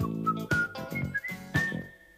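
Cartoon theme music: a thin, high whistled melody over bass notes and a beat, ending on a held high note that fades out near the end.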